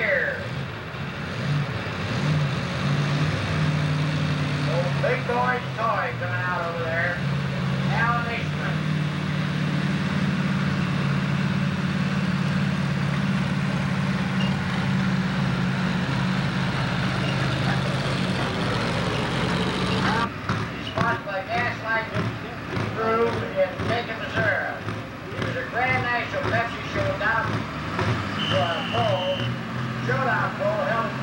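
Red International pro stock pulling tractor's turbocharged diesel engine working hard under load as it pulls the sled, its note stepping up in pitch over the first few seconds and then held steady. About two-thirds of the way through, the sound changes abruptly to a lower engine sound with crowd voices over it.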